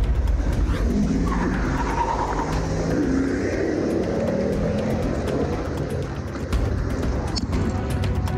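A car engine running and revving, with its pitch rising and falling, over steady background music.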